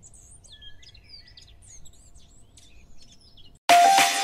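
Faint birdsong: scattered short chirps and whistles over a low hum. Loud music starts suddenly near the end.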